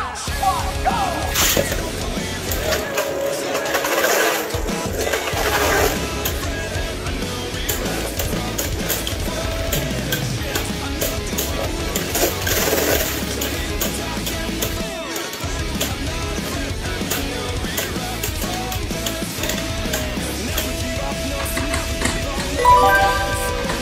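Rock background music over two Beyblade spinning tops whirring and clattering against each other and the plastic stadium wall, with sharp clicks from their collisions throughout.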